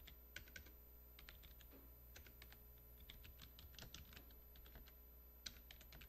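Faint, irregular light clicks and taps, several a second, over a low steady hum of room tone.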